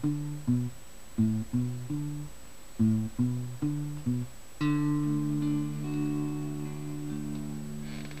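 Fender Telecaster electric guitar played with a picking pattern: three quick groups of short plucked notes, then a chord struck about four and a half seconds in and left to ring.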